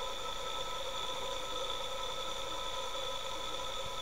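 Battery-powered 360-watt permanent-magnet electric motor running steadily: a constant whine made of several steady tones over a hiss.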